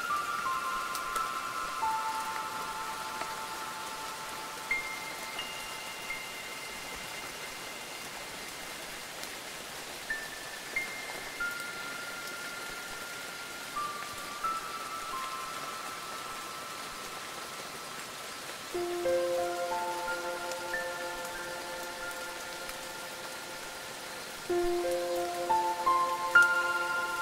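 Steady rain falling, with slow, sparse notes of ambient music ringing out over it, a few at a time, each held for several seconds. Deeper, louder notes come in about three-quarters of the way through and again near the end.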